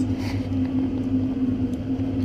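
Waste oil furnace running with a steady low drone from its burner and blower, one even tone that does not change.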